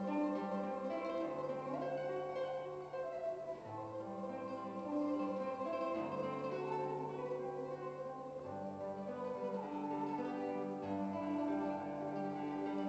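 Solo classical guitar played fingerstyle: a melody of plucked notes over held bass notes that change about every two seconds.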